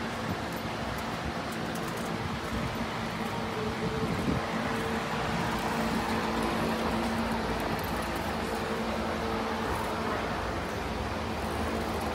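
Steady mechanical hum over outdoor street noise, with no clear events standing out.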